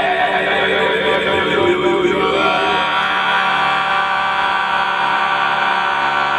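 A group of men and women singing together in long held notes, several voices overlapping in a chant-like chorus.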